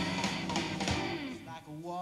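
Live blues band playing, led by electric guitar. About one and a half seconds in, the full band drops back, leaving a few held notes.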